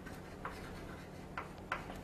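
Chalk writing on a chalkboard: faint scratches and a few light taps as the strokes are made.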